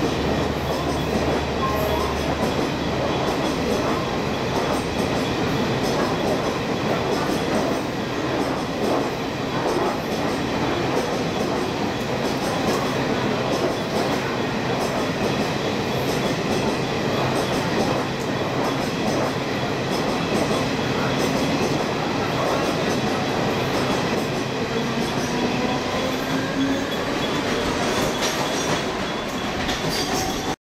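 Luxury passenger coaches of a train running past at speed: continuous rumble of wheels on rail with a rapid clatter over the rail joints. A low drone fades out about two seconds in.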